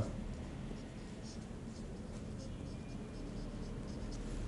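Marker pen writing on a whiteboard: a series of faint, short strokes as letters are written.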